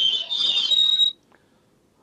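Interference on a phone-in telephone line: a shrill, steady whistle with hiss that cuts off suddenly about a second in, leaving the line silent.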